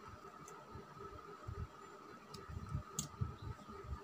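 Faint handling noises from hand-sewing a stuffed plush toy closed: several soft low bumps and a sharp click about three seconds in, over a faint steady high-pitched hum.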